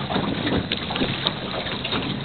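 Wind blowing on the microphone with water moving around a small sailing dinghy, an even hiss with no distinct events.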